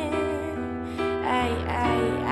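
A woman singing over an instrumental backing track with a steady bass line: she holds a long note, then starts a new phrase about a second and a half in.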